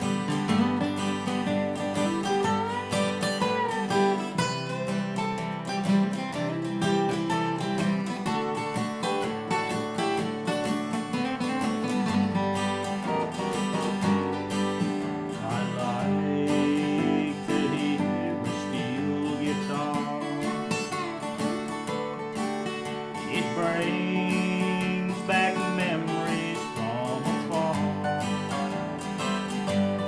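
Two steel-string acoustic guitars playing an instrumental break in a country song: a picked lead melody over steady strummed chords.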